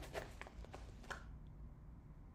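Soft rustling and a few light handling knocks in the first second or so, as small items are put away into packaging, then only a faint steady low hum.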